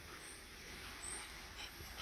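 Golden retriever panting faintly close by.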